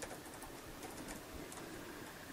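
Faint keystrokes on a computer keyboard: a quick run of about nine key presses typing out a word.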